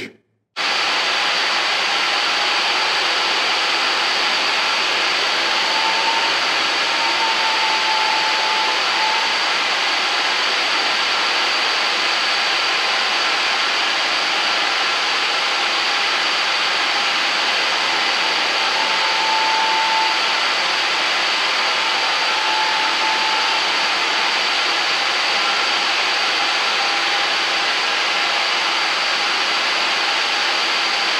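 WerkMaster The Edge 110V concrete floor grinder running steadily with 70-grit metal-bond diamond tools on a concrete floor, together with its hose-connected dust extractor vacuum: an even, unbroken machine whine and hiss. It cuts in abruptly just after the start.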